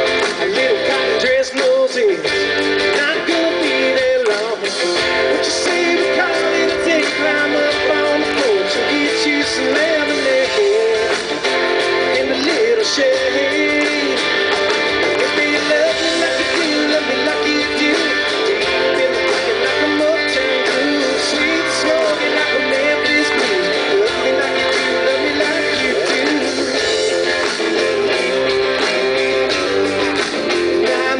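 A live rock band playing an instrumental passage of a song, with a strummed electric guitar to the fore and a wavering melodic line over the band.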